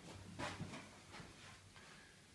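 Faint footsteps: a few soft knocks, the clearest about half a second in, over a low hum in the first half.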